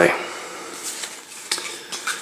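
A deck of theory11 Provision playing cards being closed up from a fan into a squared deck: a soft rustle of card stock with two faint clicks, one about a second in and one near the end.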